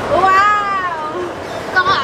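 A person's drawn-out, high-pitched vocal cry, without words, rising and then falling in pitch over about a second, then a shorter cry near the end.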